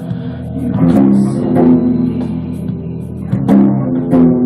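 Yamaha electric guitar playing a ringing picked chord pattern, with a new chord struck about every second.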